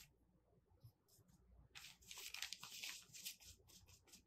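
Faint scratchy strokes of a paintbrush working thick paint into craft-fuse interfacing laid on paper, starting a little under halfway in after a near-silent pause.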